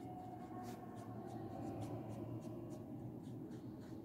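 Green wax crayon being rubbed back and forth on a textbook page, colouring in a leaf drawing: a quick run of faint scratchy strokes on paper, several a second.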